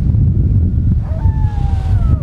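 Wind buffeting the microphone, a steady low rumble, over sea surf breaking on the beach. A faint drawn-out tone, falling slightly in pitch, sounds in the second half.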